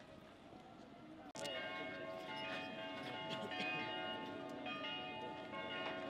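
Church bells ringing: after a faint first second, many overlapping bell tones start suddenly, with fresh strikes every so often and a long hum after each.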